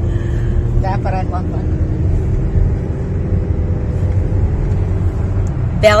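Steady low rumble of road and engine noise inside a moving minivan's cabin, with a faint steady hum.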